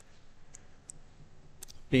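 A few faint, scattered clicks of computer keyboard keys being pressed while code is typed, with a man's voice starting right at the end.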